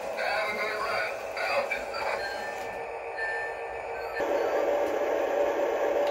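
Sound effects from a Lionel O gauge model locomotive's onboard speaker: a muffled voice for the first two seconds, then a few thin steady tones, then from about four seconds in a steady diesel engine rumble that starts suddenly.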